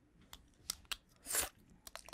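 Clear plastic dental aligners (Invisalign) being pulled out of a mouth: a few sharp, wet clicks and one longer crunchy, slurpy noise a little over a second in, played faintly through the video.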